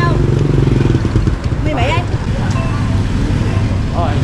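A motor scooter's small engine running close by, a steady low drone.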